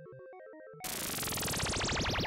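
A quiet electronic tune of short, stepped, video-game-like notes, cut off about a second in by a much louder synthesized sci-fi teleport sound effect: a dense shimmer with pitch sweeping rapidly up and down.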